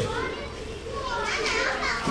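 Children's high-pitched voices chattering and calling, busiest in the second half, over a steady low hum.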